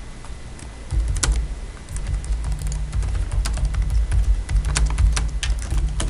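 Typing on a laptop keyboard: irregular key clicks, over a low rumble.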